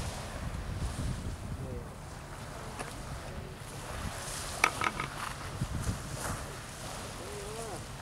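Wind buffeting the microphone as an uneven low rumble. A few short, sharp sounds come about halfway through, and there are faint voices in the background.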